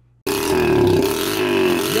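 2007 Yamaha TTR90's small four-stroke single-cylinder engine running loud with no exhaust silencer fitted. It starts abruptly about a quarter second in, and its pitch wavers slightly.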